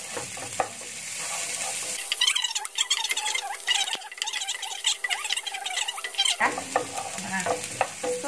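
Sliced onion, shallots and chilies sizzling in hot oil in a wok while a wooden spatula stirs and scrapes them around the pan, with the scraping strokes busiest in the middle few seconds. This is the spice base being sautéed until the chili aroma comes out.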